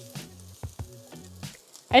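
Chopped turkey bacon sizzling in a frying pan, with a few small clicks.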